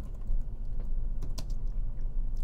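Typing on a computer keyboard: a run of irregular key clicks as a short phrase is typed.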